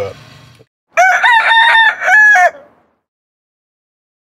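A rooster crowing once, a full cock-a-doodle-doo of several notes ending on a longer held note, lasting about a second and a half. It is a morning sound cue that marks the jump to the next day.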